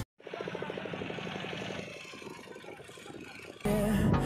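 A fishing boat's engine running quietly with a fast, even beat, under the hiss of sea and wind. Loud music starts near the end.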